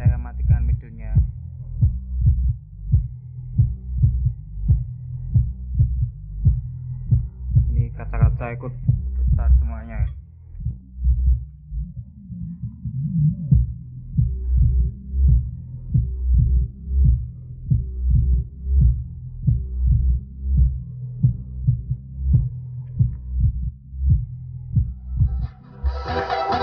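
A 10-inch Sphinx dual-coil car subwoofer in a bandpass box, driven by a TPA3116D2 class-D amplifier, plays a DJ dance track. What is heard is mostly a heavy bass beat about twice a second, with little of the upper range apart from brief chopped vocal snippets. Near the end the full-range music comes in.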